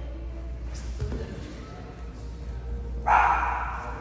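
A single dog bark about three seconds in, the loudest sound here. It rings briefly in the gym. Earlier, about a second in, there is a soft low thump from the grapplers moving on the mat.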